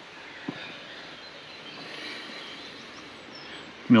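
Steady outdoor background noise, a faint even hiss with no machine running, and one faint click about half a second in.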